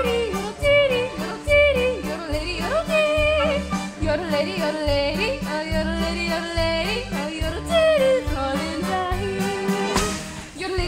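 A woman's voice yodeling, its pitch leaping up and down in quick breaks, over musical accompaniment with a steady bass pulse and a quick even beat.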